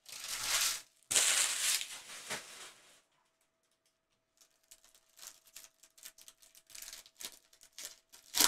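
Wrapper of a 2021 Topps Series 1 baseball card pack crinkling and tearing as it is ripped open: two loud rips in the first two seconds and a smaller one after. Faint clicks and rustles of the cards being handled follow.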